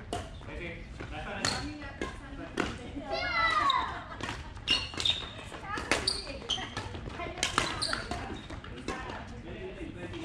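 Badminton rally on a wooden hall floor: sharp, irregular racket-on-shuttlecock hits and brief high shoe squeaks, with voices in the background.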